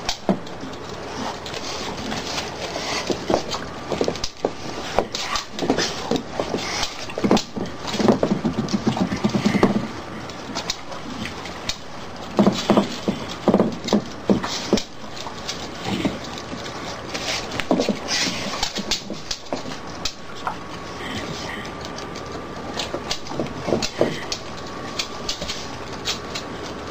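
Dogs licking their emptied plastic food bowls, with irregular clatters and knocks as the bowls are nosed and slide across a hard floor.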